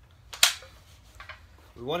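A single sharp knock about half a second in, then a couple of faint ticks. No power tool is running.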